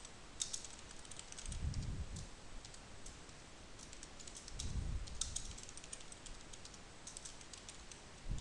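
Typing on a computer keyboard: faint clicking keystrokes in quick bursts with short pauses between words, and twice a soft low rumble under the keys.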